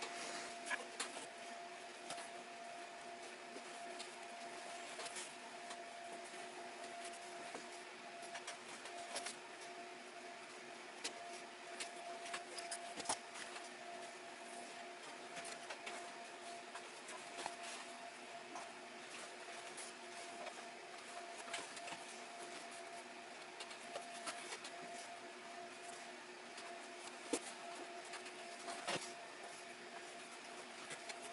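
Faint, irregular rustles and small ticks of hand-stitching leather: thread being drawn through the hide and the leather handled. A steady faint hum runs underneath.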